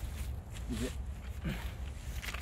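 One short spoken word over a low, steady rumble and faint rustling; the pole saw's engine is not running.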